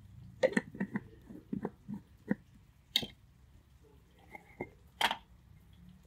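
A spoon clicking and scraping against plastic and glass seasoning jars, with jar lids knocking. There is a run of quick light clicks in the first couple of seconds, then two sharper knocks about two seconds apart.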